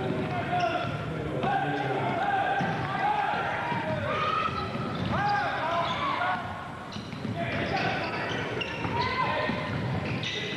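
Basketball being dribbled on a hardwood gym floor during play, with voices calling out over it.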